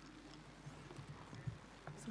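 Quiet hall room tone with a few faint, scattered clicks and knocks.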